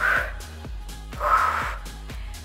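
Background workout music with a steady beat, over which a woman breathes out hard twice, about a second apart, with the effort of an exercise rep.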